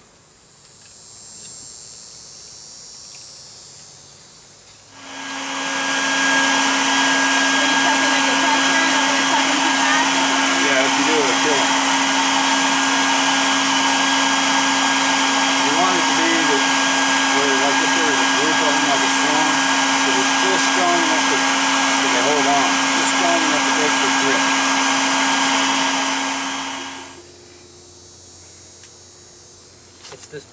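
An electric vacuum-type motor switches on about five seconds in, runs steadily with a hum for about twenty seconds, and then winds down and stops.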